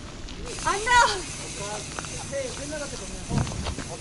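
Men's voices with no clear words: a loud, drawn-out exclamation about a second in, then brief snatches of voice. Under them runs a steady hiss, and there is a dull low thump a little after three seconds.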